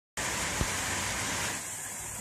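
Steady hiss of heavy rain, loud enough that the smith must raise his voice over it, easing a little about one and a half seconds in.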